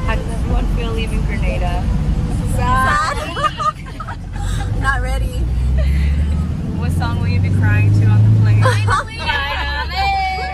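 Several women's voices chattering and laughing inside a moving minibus, over the low drone of the van's engine. The drone rises in pitch through the second half and falls back near the end, as the van speeds up.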